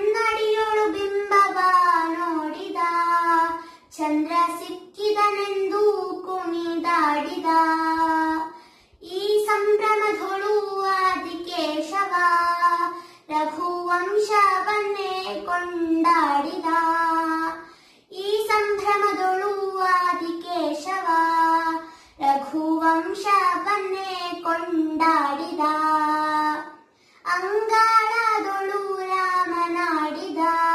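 A young girl singing solo, unaccompanied, in a small room: held notes with melodic ornamentation, in phrases of about four seconds, each ending in a short pause for breath.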